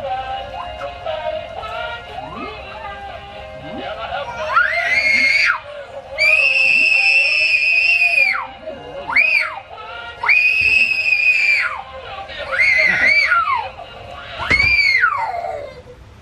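Music-like tones, then from about four seconds in a series of six loud, high-pitched shrieks, each gliding up, holding steady for up to two seconds, and dropping away.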